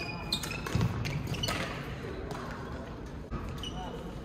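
Doubles badminton rally: rackets hitting the shuttlecock with sharp clicks several times, with footfalls and brief shoe squeaks on the court.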